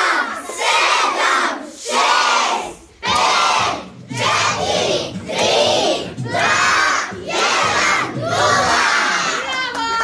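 A group of children shouting together in a rhythmic chant, in loud phrases of about a second with short breaks between them.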